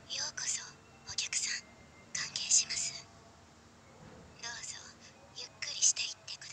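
Whispered speech in a girl's voice: a few short, breathy phrases.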